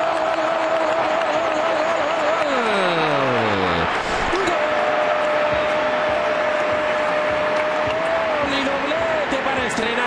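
A football commentator's long drawn-out goal shout held on one pitch, sliding down and breaking off about four seconds in, then held again for about four seconds, over a stadium crowd cheering the goal.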